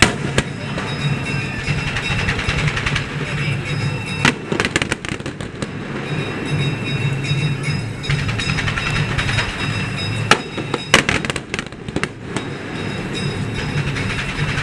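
Aerial fireworks going off: a sharp bang right at the start, bangs and crackling around four to five seconds in, then a cluster of bangs between about ten and twelve seconds. Steady music and crowd noise carry on underneath.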